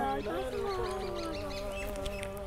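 Faint sung vocal of a background nasheed: a long held note sliding slowly down in pitch.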